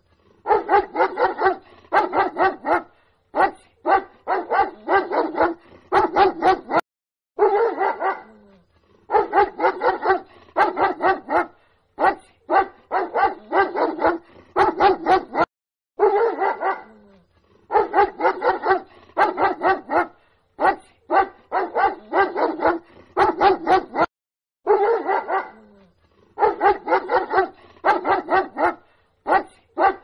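Dog barking in quick runs of barks. The same stretch of barking repeats almost exactly about every eight and a half seconds, as a looped recording does.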